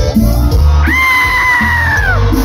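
Live cumbia band playing through a PA: a steady heavy bass and drum beat, with one long held high note coming in about a second in and sliding down at the end.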